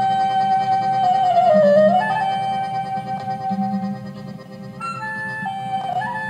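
Clarinet playing a folk melody: a long held high note that dips in pitch and comes back, then shorter stepped notes near the end, over strummed guitar and plucked double bass.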